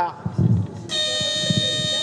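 An electronic competition buzzer sounds one steady, loud tone, starting about a second in and holding to the end.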